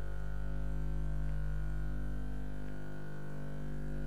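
A steady low hum with many evenly spaced overtones, unchanging throughout, like electrical hum on the broadcast audio.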